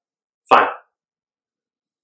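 One spoken word, "Fine," about half a second in; otherwise silence.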